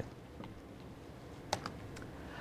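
Two short, sharp clicks about one and a half seconds in, from advancing the presentation to the next slide, over quiet room tone.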